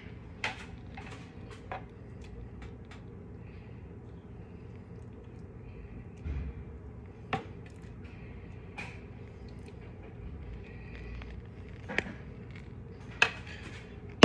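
A spoon tapping and scraping against ceramic bowls as tzatziki is spooned onto a food bowl: a handful of light, separate clicks over a steady low background hum.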